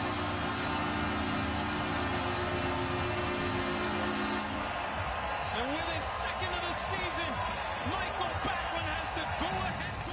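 Arena crowd cheering after a home goal, with the goal horn's steady chord sounding over it. The horn cuts off about four and a half seconds in, and the cheering goes on with voices shouting over it.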